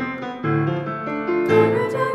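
Piano accompaniment playing held chords that change about every second, with young choir voices entering near the end.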